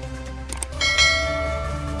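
Subscribe-button sound effect: a short click about half a second in, then an electronic bell chime that rings out with many overtones and slowly fades, over low background music.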